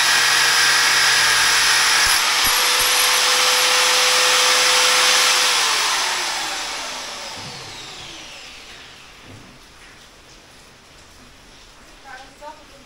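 Handheld angle grinder cutting through the last coil of a steel Yamaha Ténéré 700 fork spring, with a loud grinding noise and a steady motor whine. About halfway through it is switched off, and the whine falls in pitch as the disc spins down over a few seconds.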